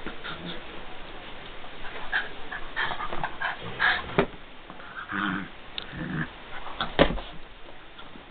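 A blue pit bull puppy and a Jack Russell–Chihuahua mix at play with toys: a string of short dog noises and small knocks, the loudest a sharp knock about seven seconds in.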